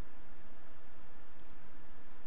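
Two faint computer mouse clicks about one and a half seconds in, over a steady background hiss.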